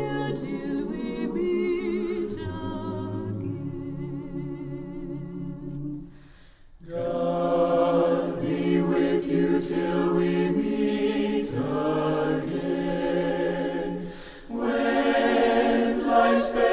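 Choir singing in several parts, holding long sustained chords, with a pause for breath a little before halfway and a shorter dip near the end.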